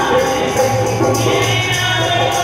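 Women singing a devotional bhajan together to harmonium accompaniment, with a steady beat of hand percussion.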